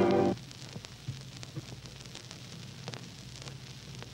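Swing orchestra with brass breaks off sharply about a third of a second in. A low hum and the faint crackle of an old broadcast recording follow.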